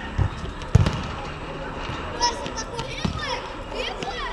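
Dull thumps of a volleyball being struck by hand, three in all, the loudest about a second in, with players' voices calling out between the hits.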